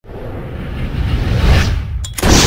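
Whoosh sound effect over a low rumble, swelling in from silence to a peak about one and a half seconds in, then dropping away sharply just before the end.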